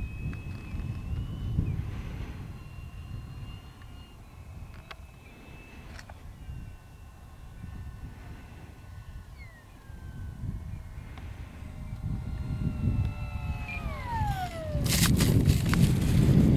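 70 mm electric ducted fan of an RC Super Scorpion jet whining as it flies past on the landing approach, its several tones falling in pitch as it passes, about nine seconds in and again more steeply about fourteen seconds in. Low wind rumble throughout, and a loud rush of noise near the end.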